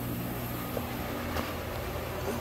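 A steady low mechanical hum, with one faint tick about a second and a half in.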